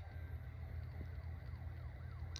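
Faint siren sounding in quick rising-and-falling sweeps, about three a second, over a steady low hum.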